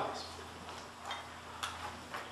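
A pause in the speech: faint room tone with a low steady hum and a few faint, irregular ticks.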